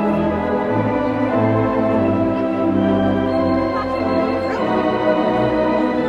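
Music: sustained organ chords, the held notes shifting every second or so.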